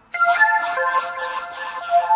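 Electronic dance music: a bright, high synth melody with a hissy wash over it comes in suddenly just after the start, with no bass beneath it.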